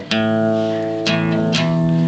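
Richwood acoustic guitar playing a short run of single plucked notes on the low strings, each left to ring: one at the start, then two more close together about a second in.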